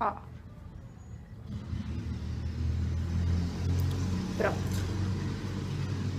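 Low engine rumble of a motor vehicle, rising in from about one and a half seconds in and holding steady.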